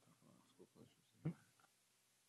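Near silence: meeting-room tone with faint scattered rustling, and one short, low sound about a second and a quarter in.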